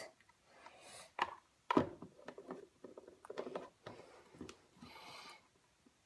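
Quiet handling of plastic sippy cups and lids: a few light clicks and small knocks, with a brief faint hiss near the end.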